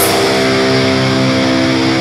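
Black metal band's distorted electric guitars holding one ringing chord, with the drums and vocals stopped.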